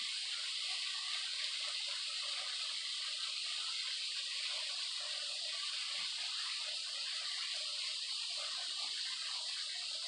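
Small waterfall falling steadily down a rock face into a cave: a continuous, even hiss of splashing water.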